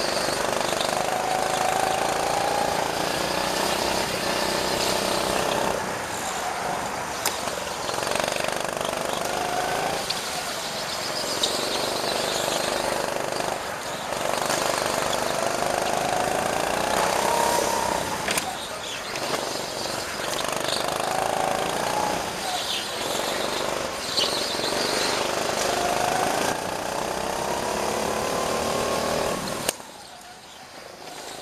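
Go-kart engine heard from on board, repeatedly revving up over a few seconds and dropping back, about six times, as the kart accelerates out of each corner and lifts off for the next.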